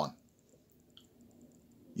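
A pause between spoken words: quiet room tone with one faint click about a second in.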